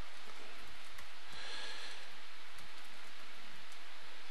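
Steady background hiss with a few faint clicks of keys being typed on a computer keyboard.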